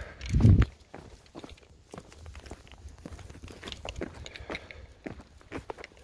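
Footsteps and light taps on block paving while a small dog is walked on a leash, with one loud low thump about half a second in.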